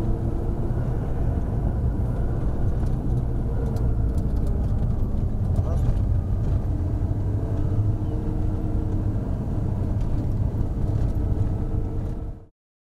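Steady cabin noise of a car driving on an asphalt road: engine running and tyre and road rumble, heard from inside the car.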